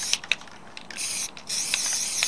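Aerosol spray paint can hissing in short bursts: a brief spray about a second in and a longer one starting halfway through, with a few small clicks in between.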